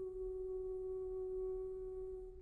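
Soprano voice holding one steady, nearly pure high note without vibrato.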